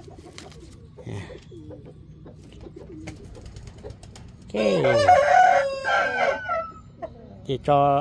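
A rooster crows once, a single crow of about two seconds beginning about four and a half seconds in, its pitch dropping at the start and then holding.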